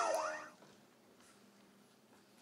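Electronic soft-tip dart machine's sound effect for a bull hit: several falling electronic tones that fade out about half a second in.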